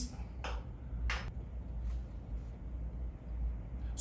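Small knife shaving slivers off a bar of soap: three short, soft scrapes, the middle one the loudest, over a low steady hum.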